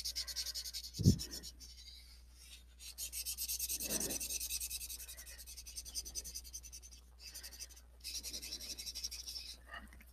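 Marker tip scrubbing back and forth on paper as a drawing is coloured in: a quick, even scratchy rubbing of several strokes a second, pausing now and then. A soft knock sounds about a second in.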